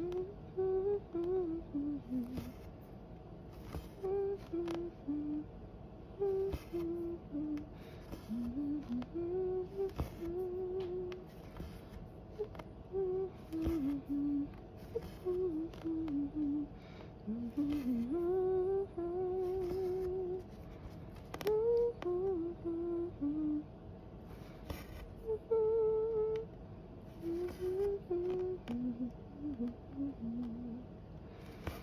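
A woman humming a wandering tune to herself, note by note, with short rustling swishes and a few light clicks as embroidery floss is drawn through cross-stitch fabric.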